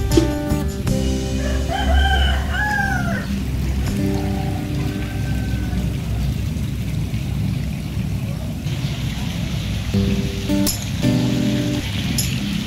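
A rooster crowing once, a long call about two seconds in that rises and then falls, followed by a fainter short call a couple of seconds later. Background music with held notes plays at the start and again near the end.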